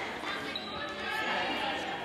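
Indoor volleyball rally: the ball being struck, with voices from players and spectators echoing in a large gym.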